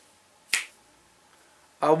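A single short, sharp snap about half a second in, then a man's voice starting near the end.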